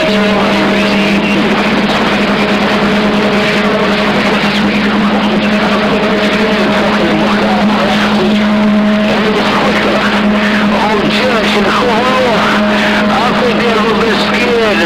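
Receive audio from an AM CB radio tuned to 27.025 MHz: a steady hiss of static with a low steady tone that comes on at the start and a fainter higher tone above it. Faint garbled voices run under the noise, more toward the end.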